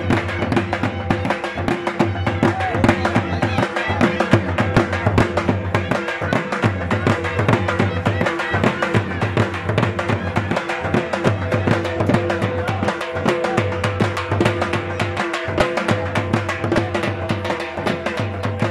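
Two dhols, double-headed barrel drums struck with sticks, playing a fast, dense folk beat over a steady held tone.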